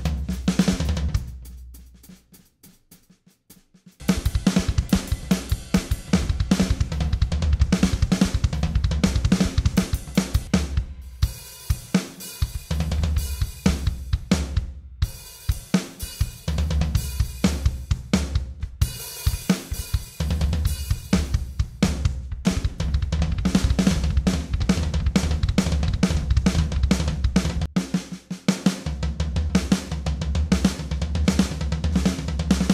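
Virtual acoustic drum kit (Logic's SoCal kit) triggered by air drumming with Aerodrums: a busy groove of kick, snare, hi-hat and cymbal hits. It trails off about a second in, falls nearly silent, and starts again sharply about four seconds in.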